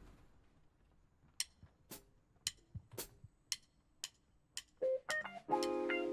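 A funk band's count-in: seven evenly spaced sharp clicks, about two a second, then a couple of plucked notes, and about five and a half seconds in the band comes in with a held chord.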